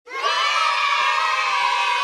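Large crowd cheering, starting suddenly at full level and holding steady.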